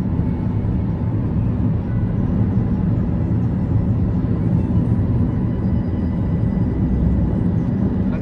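Steady road and engine rumble heard from inside a car cruising on a highway, a dense low noise with a faint steady hum above it.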